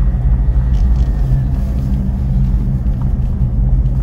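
Ford Endeavour SUV driving: a steady low rumble of engine and tyre noise heard from inside the cabin.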